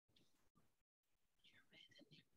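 Near silence: faint room tone over a video-call feed, cutting in and out.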